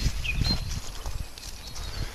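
Song thrush singing: a short whistled phrase in the first half second. Dull low thumps run underneath, loudest at the start.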